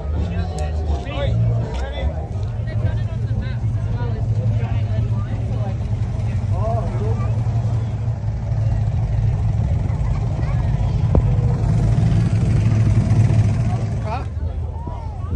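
Car engine idling with a deep, steady rumble that swells louder near the end, over faint crowd chatter.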